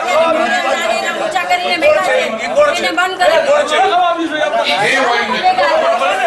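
Many men's voices talking and shouting over one another in a crowded hall, a heated argument with no single voice standing out.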